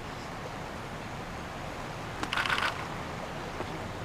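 Steady outdoor background hiss of a golf course broadcast feed, with a commentator's short exclaimed "Oh" a little past halfway.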